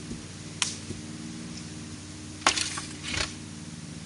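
Steady low hum with a few sudden sharp noises, the loudest about two and a half seconds in, followed by a brief rustle.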